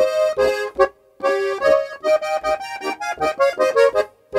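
Styrian diatonic button accordion (Steirische Harmonika) playing the introduction of a folk tune. Chords and melody notes sound over short bass notes, with a brief pause about a second in, then a run of quick short notes.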